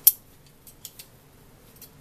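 Long-bladed metal scissors: one sharp snip of the blades right at the start, then a few faint light clicks. They are being readied to cut the bubble-wrap inserts out of a felted wool vessel.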